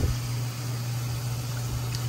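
Water sloshing and swishing in a plastic tub as a hand works through a clump of aquarium plants to rinse them, over a steady low hum.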